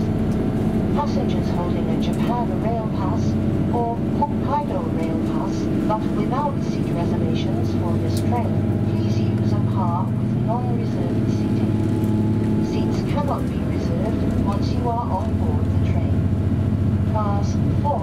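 Cabin sound of a KiHa 283 series diesel railcar under way: a steady engine drone with running noise, its pitch shifting a couple of times partway through.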